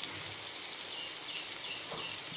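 Mint paste sizzling in hot oil in a stainless-steel kadai, a steady frying hiss. From about a third of the way in, a faint short high chirp repeats three to four times a second over it.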